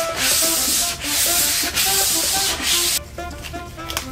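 Hand-sanding a stained wooden board with a sanding block: about four long back-and-forth strokes of rasping hiss that stop about three seconds in, over background music.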